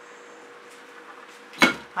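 Quiet room tone, then about one and a half seconds in a single sharp clack as the OXO plastic spatula is set down on the work table.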